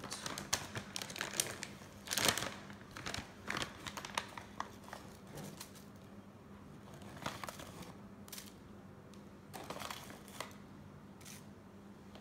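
A plastic pouch of sea salt crinkling as it is handled and opened. The irregular crackles come thickly for the first few seconds, then in sparser clusters.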